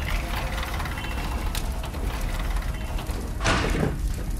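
Metal roll-up door being raised, a continuous ratcheting rattle as its slats roll up, louder near the end.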